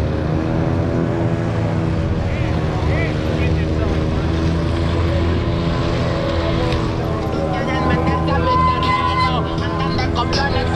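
A dirt bike's engine running steadily close by, with voices from the crowd mixed in toward the end.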